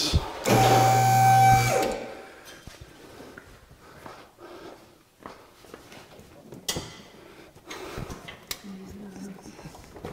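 A two-post vehicle lift's electric hydraulic pump motor runs with a steady hum for about a second and a half as it raises the Jeep's body off its frame, then stops. Faint clicks and knocks of metal follow.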